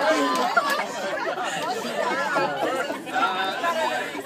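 A small crowd of people chattering, with many voices talking over one another.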